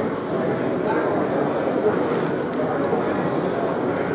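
Indistinct background chatter of many people talking at once, a steady hubbub of voices.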